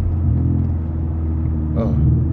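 Four-wheel-drive car's engine running steadily, heard from inside the cabin as a low drone. Its note rises a little about a quarter of a second in.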